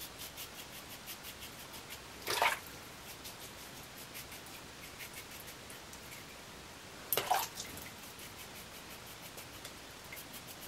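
Vintage Gillette safety razor scraping through lather and stubble in quick short strokes on a first pass with the grain, with two louder half-second rasps about two and seven seconds in.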